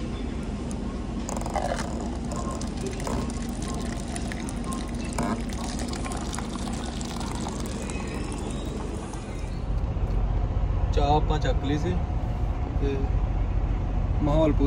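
Tea pouring from a stainless-steel urn's tap into a paper cup over a steady hum. About ten seconds in, this gives way to the louder low rumble of a truck cab, with a voice.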